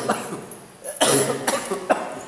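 A person coughing: one burst right at the start and a longer, louder one about a second in.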